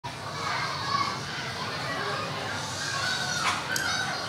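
Many children chattering at once in a large hall, a steady babble of overlapping young voices, with a brief falling squeal about three and a half seconds in.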